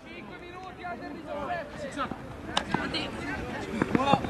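Faint shouts and chatter of players and onlookers at an ultimate frisbee match, with a few short sharp clicks.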